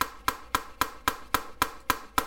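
Buck Rival 3 lockback folding knife clicking sharply and evenly, about four clicks a second, as the blade is worked against its pivot and lock.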